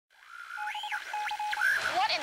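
Electronic intro sting fading in: steady synthetic tones, a brief tone that sweeps up and back down, and a lower tone chopped into rapid beeps, with a few sharp clicks.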